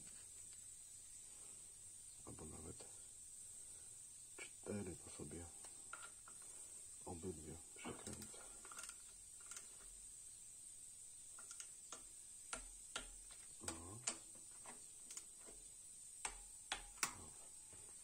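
Ratcheting torque wrench clicking in short runs of quiet sharp clicks, mostly in the second half, as M8 bolts into the aluminium thermostat housing are tightened to 22 Nm.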